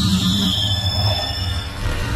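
Sound-designed explosion for the Big Bang: a sustained deep rumble with a high whine gliding down in pitch, under music.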